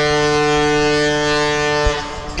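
A cruise ship's horn sounding one long, steady, deep note that cuts off with a brief thump near the end.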